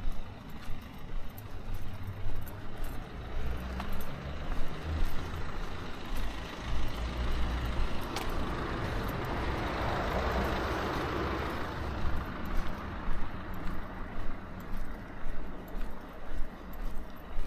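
A road vehicle passing close by, building up over a few seconds to a peak around the middle and then fading, with a low rumble under the rush of tyres and engine. Footsteps at a steady walking pace are heard before and after it passes.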